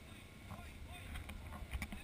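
Low rumble of wind and movement on a camera microphone during an elephant ride, with a few short clicks in the second half and faint distant voices.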